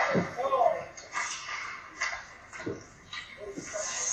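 Voices in an indoor ice hockey rink during play: someone calls out in the first second, then a few sharp knocks from sticks and puck on the ice.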